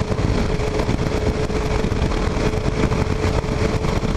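2009 Kawasaki KLR 650's single-cylinder engine holding a steady highway cruise, with a constant even hum, under heavy wind rush on the microphone.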